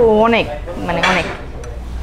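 A metal spoon stirs and scrapes in a ceramic bowl of thick beef curry. In the first second or so, a woman's voice makes two short utterances over a steady low hum.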